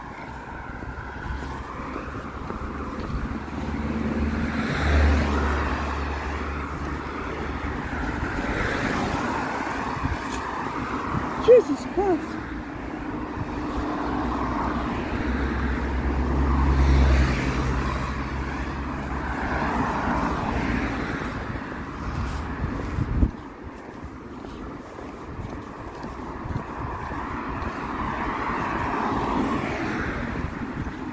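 Road traffic going by, the noise of passing cars swelling and fading every few seconds, with a deeper rumble twice.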